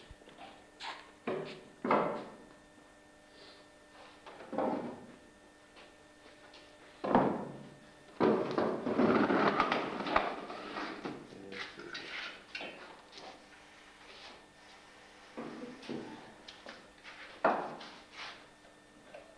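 Scattered knocks and thuds a few seconds apart, with a longer, denser stretch of clattering about eight seconds in.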